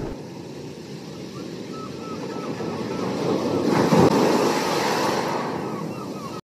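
Sea surf: a wave swells and breaks about four seconds in, with faint gull calls repeating over it.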